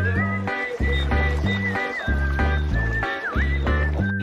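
Instrumental music: a bass line stepping through notes in a steady rhythm under a high, held melody line that bends sharply down and back up near the end.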